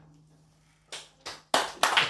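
The last keyboard note fades out, a couple of single claps come about a second in, and then a small group starts clapping, with separate claps about four a second, as applause at the end of the song.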